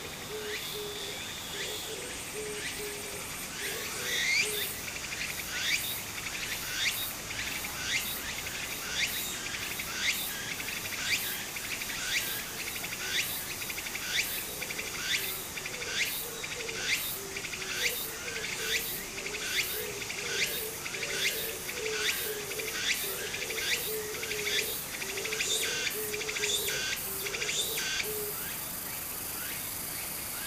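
A cicada calling in a pulsing rhythm, a little more than one pulse a second, starting about four seconds in and stopping near the end. Under it, the steady rush of a shallow stream running over gravel.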